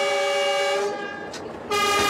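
Diesel locomotive horn sounding two blasts: a steady one lasting about a second, then a shorter one near the end. It is sounded as the train sets off, once the departure signal has been confirmed.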